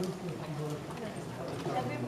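Several people's voices talking close by, with footsteps on a cobblestone street.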